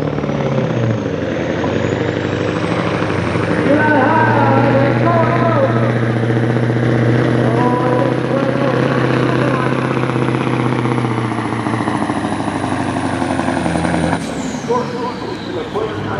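Mack semi truck's turbo diesel engine under full load pulling the sled, its turbocharger whistle rising over the first few seconds and holding high. About fourteen seconds in the throttle is let off and the whistle falls away quickly.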